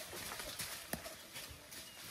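Leaves and branches of a laden mango tree rustling and knocking as someone climbs in it, with irregular sharp knocks, one louder than the rest just under a second in.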